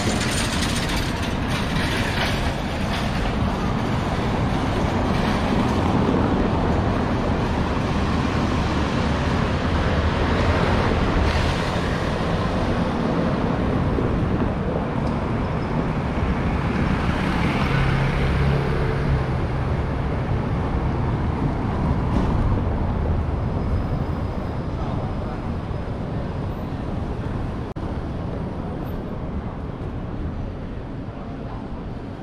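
City street traffic on a cobbled street with tram tracks: a heavy, steady low rumble of traffic, with a motor vehicle passing a little past the middle, its engine note swelling and fading. The rumble eases off somewhat near the end.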